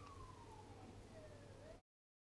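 Faint siren wailing, its pitch falling slowly and then starting to rise again, over a low background hum. The sound cuts off suddenly near the end.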